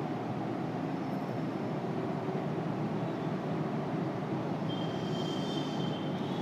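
Steady room noise, like a fan, with no speech. Near the end comes a faint thin high squeak, a marker being drawn across a whiteboard.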